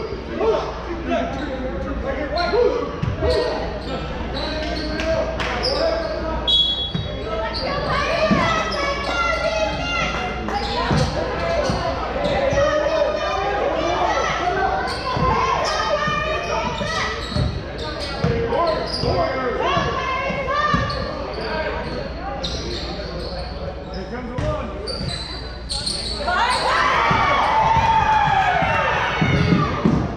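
Basketball bouncing on a hardwood gym floor, with repeated short knocks throughout, under players' and spectators' voices echoing in a large gym. The voices grow louder in the last few seconds.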